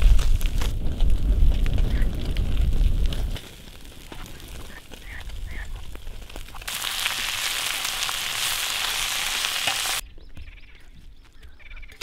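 Whole kofana (large bluefish) cooking on campfire embers: a low rumble for the first few seconds, then a steady sizzling hiss from past halfway that cuts off suddenly, leaving it quiet near the end.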